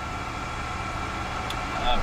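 Steady hum with a thin constant whine from the Embraer Phenom 300's cockpit systems running on ground power, engines not yet started. There is a faint click about one and a half seconds in.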